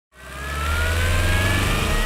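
Broadcast news intro sound effect: a riser that fades in from silence, a deep rumble under thin tones that slowly climb in pitch, building toward the music sting.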